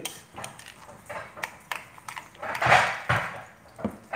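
Metal spoon stirring a thick sauce in a small glass bowl, with light clinks of the spoon on the glass, and a louder rushing sound about two and a half seconds in.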